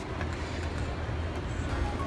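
Steady low hum and rumble of a running escalator, with indistinct mall background noise.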